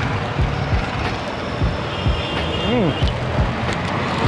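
Street traffic noise, passing cars, motorbikes and auto-rickshaws, with music underneath keeping a steady low beat. A short rising-and-falling tone comes in about three seconds in.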